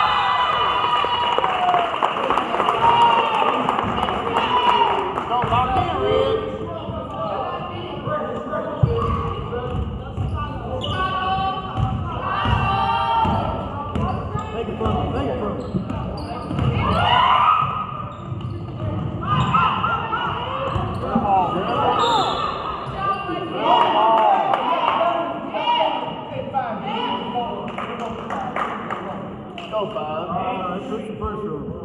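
A basketball bouncing on a hardwood gym floor, with indistinct voices of spectators and players calling and talking throughout, echoing in a large gym.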